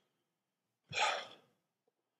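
A man's single audible breath into a close microphone about a second in: a short airy rush of air with no voice in it. The rest is near silence.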